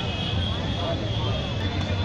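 Busy street ambience: a steady rumble of traffic with a high, steady whine running through it and people talking in the background.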